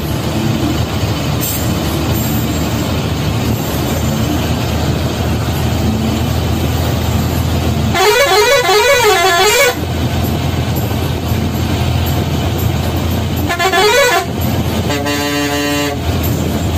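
Ashok Leyland private bus running steadily, its diesel engine and road noise heard from the driver's cabin. Halfway through a horn sounds a warbling call that rises and falls for nearly two seconds, a shorter warble follows, and near the end a steady horn note sounds for about a second.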